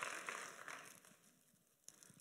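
Congregation applause dying away over about the first second, then near silence broken by one faint click near the end.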